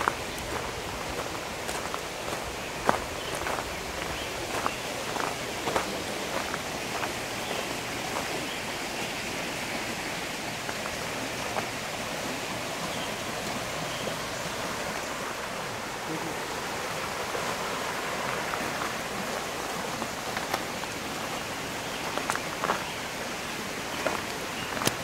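Footsteps crunching on a crushed-brick gravel path, irregular steps in the first several seconds and again near the end, over a steady rushing hiss.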